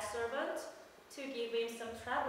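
A woman's pansori voice delivering a passage in two phrases, with a short break about a second in and a briefly held pitch in the second phrase.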